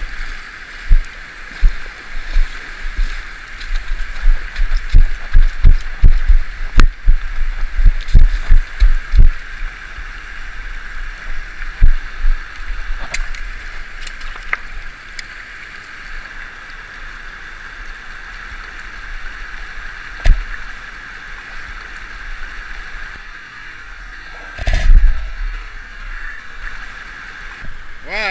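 Footsteps splashing and knocking over the stones of a shallow river, over the steady rush of flowing water. The footfalls are heavy and quick for roughly the first ten seconds, then come only now and then, with a louder burst of splashing about 25 seconds in.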